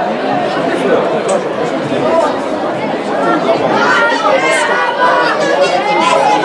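Spectators' chatter: many voices talking and calling out at once close by, with higher-pitched shouts growing stronger about four seconds in.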